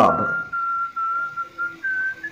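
A single high, whistle-like tone held steadily, sagging slightly in pitch and then stepping up briefly near the end.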